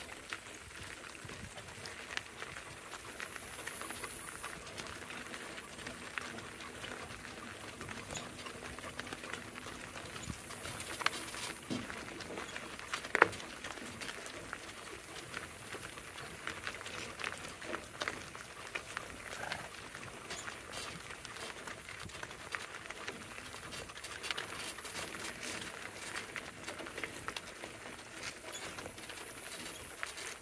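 Hoofbeats of a pair of donkeys walking on a gravel road, with the crunch of wagon wheels on gravel and the light jingle of harness trace chains, all as a steady patter of small ticks. One sharp click about halfway through stands out as the loudest sound.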